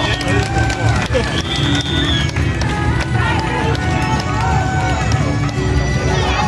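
Loud temple-procession music mixed with the voices of a dense crowd.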